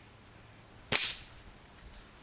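A single shot from a Daystate Huntsman Classic .177 pre-charged air rifle with a shrouded barrel, fired at a steel target: a sharp crack about a second in that rings briefly and fades within half a second, followed by a faint click near the end.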